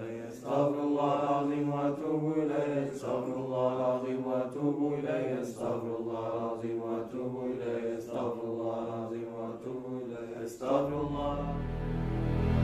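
Devotional Arabic chanting of dhikr, a voice repeating phrases of about two to three seconds each. About a second before the end, low sustained music comes in.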